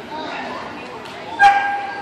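A dog gives a single short, high-pitched yelp about a second and a half in, against a background of people's chatter.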